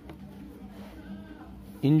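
Faint steady hum of room tone, then a man's voice clearly dictating the word "injury", drawn out, near the end.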